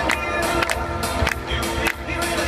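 Up-tempo dance music with a strong, regular beat and bass, playing for a competition couple's dance routine.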